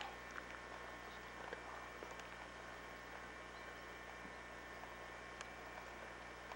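Faint, steady background hiss with a low electrical hum, the recording's own noise floor, broken by a few faint clicks, one a little clearer near the end.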